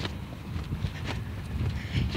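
Wind buffeting a phone's microphone, a steady low rumble, with a couple of faint taps.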